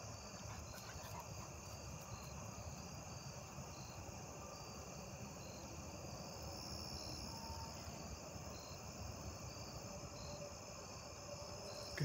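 Field insects chirping steadily: a constant high trill with a short chirp repeating regularly a few times a second, over a faint low rumble of wind or handling.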